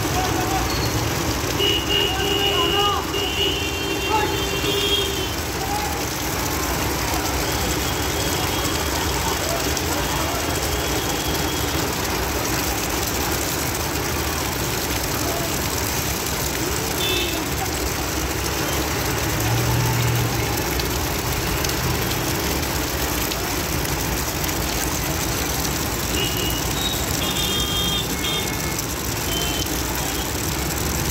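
Street traffic in the rain: a steady wash of noise from vehicles and the wet road, with a school bus driving through standing water close by. Short high-pitched tones sound a few times near the start and again near the end.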